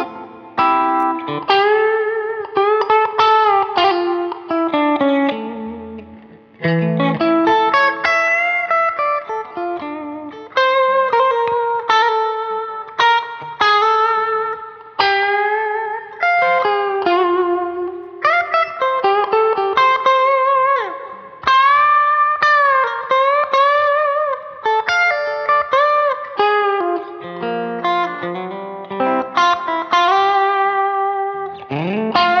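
Fender Stratocaster electric guitar with Klein 1962 Epic Series single-coil pickups, played through a Two-Rock Silver Sterling Signature tube amp with reverb and delay. It plays melodic lead lines of picked notes, with string bends and wide vibrato, and one quick slide down about two-thirds of the way through.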